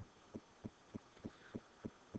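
Faint, evenly spaced soft taps, about three a second.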